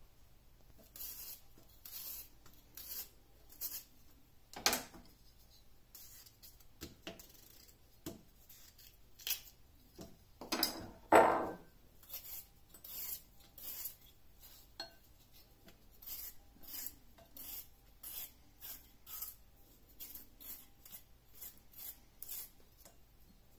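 Short, high-pitched scraping strokes of kitchen work, coming in runs of about two a second. A sharper knock comes about five seconds in, and a louder clatter of utensils around eleven seconds in.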